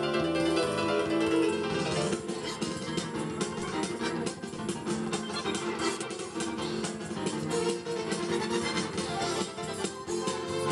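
Electronic keyboard playing a song back at a very fast tempo of 280 beats per minute: a rapid, dense stream of notes and accompaniment.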